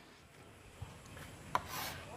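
Faint rubbing of a duster on a chalkboard, then a sharp tap about one and a half seconds in and a short scrape of chalk across the board near the end.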